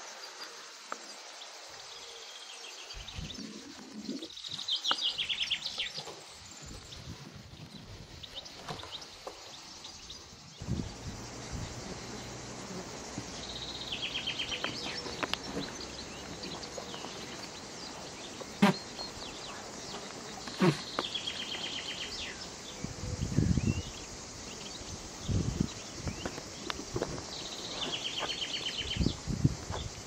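A songbird repeating a short, fast trilled phrase every several seconds, over steady outdoor background noise, with scattered low knocks and scrapes.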